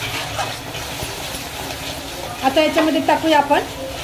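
A metal spatula stirring and scraping chopped onion and tomato around a kadhai as they fry, with a light sizzle and small clicks of the spatula against the pan.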